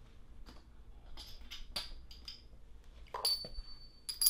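Faint handling sounds of small items being set down and moved: scattered light taps and clinks. About three seconds in there is a brief louder rustle, followed by a thin high steady tone.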